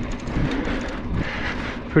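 Scott Ransom mountain bike rolling fast down a dirt singletrack: a steady rush of tyre noise on the dirt and bike rattle, with a low rumble of wind on the microphone.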